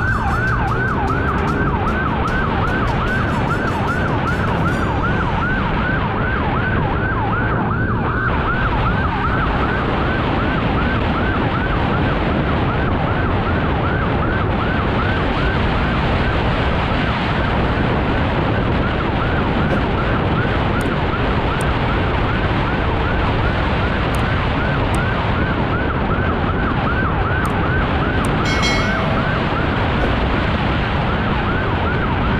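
Police motorcycle siren sounding in quick repeated rising sweeps, about four a second, over steady engine, road and wind noise from riding at speed.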